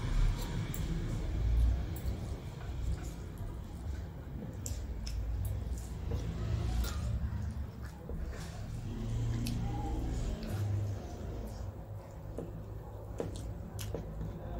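Eating by hand: fingers squishing and mixing rice and curry on metal plates, with chewing and many small, scattered clicks and smacks.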